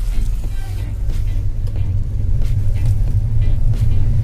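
Steady low rumble of a taxi driving, its engine and road noise heard from inside the passenger cabin.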